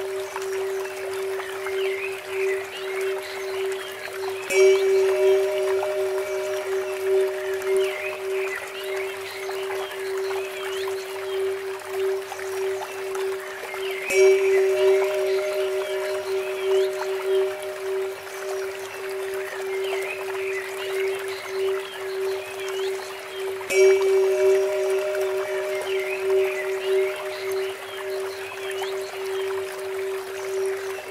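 Meditation music built on a steady drone tone tuned to 432 Hz. A Tibetan temple bell is struck three times, about ten seconds apart, each strike ringing out slowly. Trickling water from a bamboo fountain and bird chirps sit underneath.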